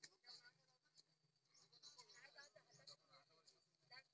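Near silence with faint, distant voices of people talking.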